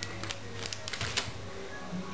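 A few light clicks and crinkles from handling a plastic-packaged card of metal hair clips, over a steady low hum.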